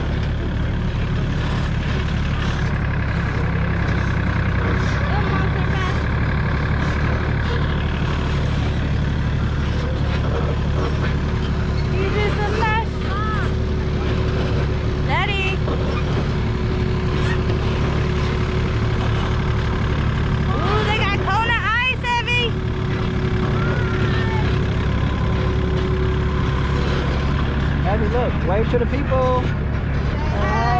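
Farm tractor pulling a hayride wagon: the engine's steady low running and the wagon rolling along. Short bursts of riders' voices come in a few times in the background.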